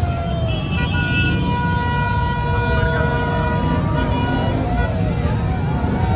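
A vehicle horn held steady for about four seconds, starting about half a second in, over a low engine rumble and a crowd shouting.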